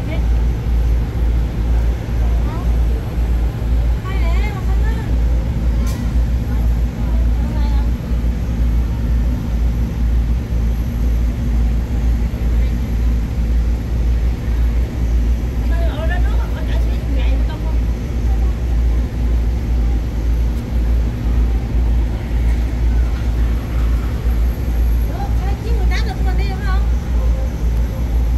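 Loud, steady deep rumble of idling airport apron shuttle buses close by, with faint chatter from a crowd of waiting passengers.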